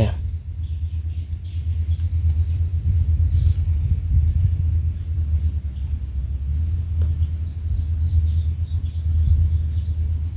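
Low, fluttering rumble of wind on the microphone, with faint high chirps near the end.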